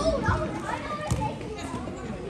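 Many overlapping voices of players and onlookers calling out and chattering. Two sharp thumps come through, about a third of a second and about a second in.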